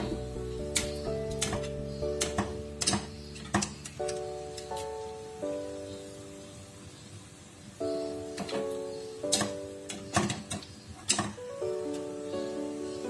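Background guitar music playing a slow melody of held notes, over scattered sharp clinks of a wire spider strainer knocking against a steel pot as boiled tofu is scooped out.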